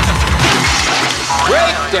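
Synthesized music and sound effects from the game-show Whammy cartoon animation wind up in a noisy burst, after which a man starts speaking near the end.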